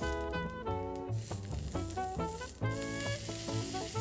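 Sesame-crusted tuna steak searing in hot oil in a frying pan, a steady sizzle, with melodic background band music over it.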